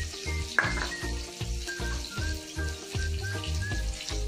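Chopped green chillies sizzling in hot oil in an aluminium kadai, a steady frying hiss. Under it runs a regular low pulse of about three beats a second.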